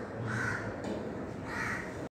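Two calls of a bird, each about half a second long, about a second apart.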